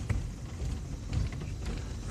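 Steady low rumble of a car being driven, heard from inside the cabin, with a few faint ticks.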